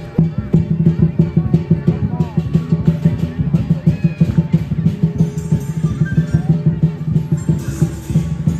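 Lion dance percussion: a large Chinese drum beaten in a fast, steady beat with cymbals clashing along.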